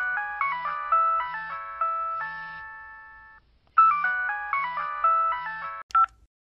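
Mobile phone ringtone: a bright electronic melody over a soft regular beat. One phrase plays and fades, and after a short gap about three and a half seconds in it starts again and cuts off suddenly near the end.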